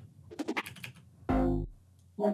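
A few computer keyboard and mouse clicks, then a single short, low synth note from the DAW's playback, lasting under half a second.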